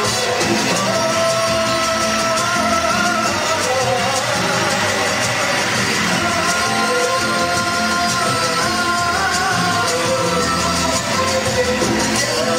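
Live mariachi-style band of trumpets, violins and guitars accompanying two male singers, with long held notes. The sound is loud and steady throughout.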